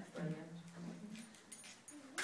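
A faint human voice held low and steady on one note, like a drawn-out murmur, with a few light clicks about a second and a half in.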